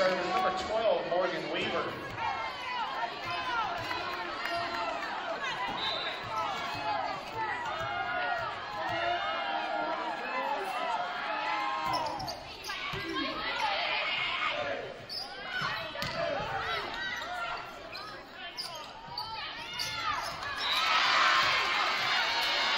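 Volleyball rally in a gym: the ball being struck and bouncing, over constant crowd and player voices, echoing in the hall. A short burst of cheering comes about two-thirds of the way through, and a louder one rises near the end as the point is won.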